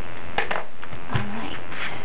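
Steady electrical buzz in the recording, a camera noise, with a few short rustles and taps of cardstock being handled.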